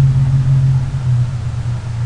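A steady low hum over a faint hiss, easing off near the end.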